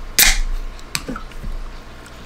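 Aluminium drink can opened by its pull tab: a sharp crack with a short hiss, followed by a lighter click just under a second later.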